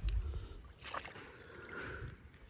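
Water sloshing and lapping against a small wooden boat as it is propelled across still water, with one short splash of a stroke about a second in.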